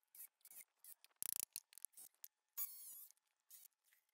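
A series of short, gritty scrapes and rasps, the loudest about a second in and a longer, squeakier scrape near three seconds in: tools and a bucket scraping on concrete during step repair work.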